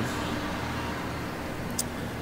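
Steady low hum and hiss of outdoor background noise, with one faint high tick near the end.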